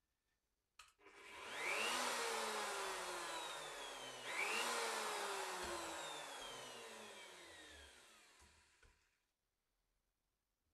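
Bosch GOF 1600 router motor switched on with a click, spinning up with a rising whine and then coasting down with a falling whine. It is switched on again about four seconds in, then winds down to a stop by about nine seconds.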